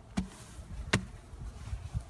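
Two sharp wooden knocks about three quarters of a second apart, the second louder, as a wooden beehive inner cover is handled against the open hive box.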